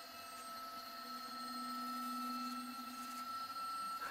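Faint hum of a milling machine's table power feed motor, driving the table along under a dial indicator, from about a second in until past three seconds, over a thin high steady whine.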